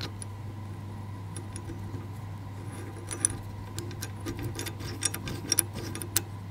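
Light clicks and taps as a small end cap is fitted by hand onto a sway bar disconnect hub, more frequent in the second half. A steady low hum runs underneath.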